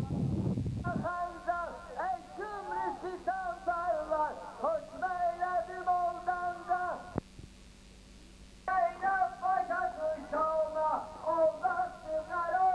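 A single voice chanting a melodic mourning lament, its pitch bending on each phrase. About seven seconds in it breaks off with a click and a short hush, then the chanting resumes. The first second is a low rumble of noise.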